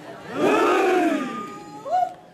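Chorus of Naga men chanting a traditional group call in unison: one long shout of many voices that rises and then falls in pitch, with a higher held note near its end, followed by a short whoop.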